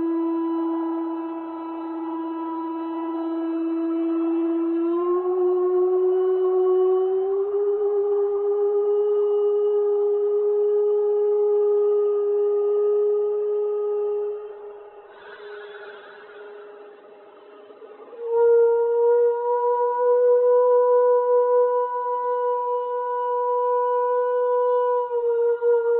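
Instrumental music of long, sustained notes, each held for several seconds and stepping upward in pitch about 5 and 7 seconds in. It falls away for a few seconds midway, with a brief hiss, then comes back louder on a higher held note.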